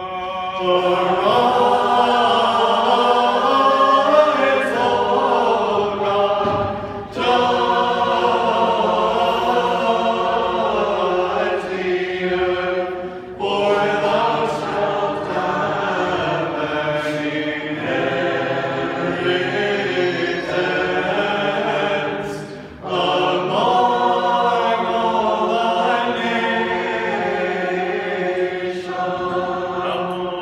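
Mixed choir of men's and women's voices singing Orthodox liturgical chant unaccompanied, in long held phrases with brief breaks for breath about 7, 13 and 23 seconds in.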